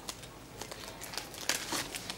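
Crinkling and rustling of plastic packaging while trading cards are handled, with a few sharper crackles about one and a half seconds in.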